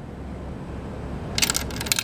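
A nickel rattling down through the all-mechanical coin changer of a Cavalier vending machine: a quick run of sharp metallic clicks about one and a half seconds in, as it runs through the switch track and trips the microswitch that unlocks the bottle rack. Before the clicks there is a steady low hum.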